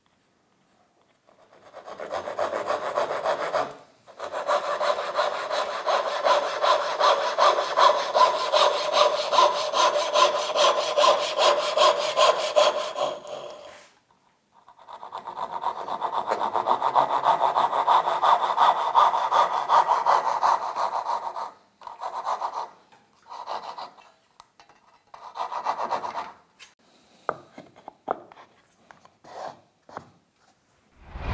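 Hand saw cutting through a plywood panel in quick, even back-and-forth strokes, about two a second. It pauses briefly twice, then finishes the cut with a few short separate strokes.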